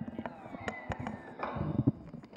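A sound effect played from a laptop by a moving-sound-source test script, heard only in mono, with a few sharp knocks and a faint, slowly falling tone.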